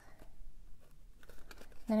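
Faint rustling and light taps of cardstock being handled as a paper heart is pressed onto a small cardstock box.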